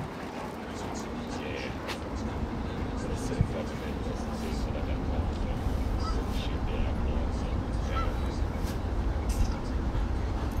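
Open-air background: a steady low rumble that grows slightly louder, with faint, indistinct voices in the distance.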